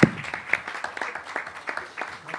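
Audience applauding, many hands clapping, with a bump right at the start as the handheld microphone is set into its stand.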